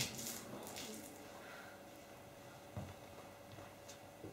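A quiet stage with faint rustling and breathy noises from the actors in the first second, and a single soft knock about three seconds in.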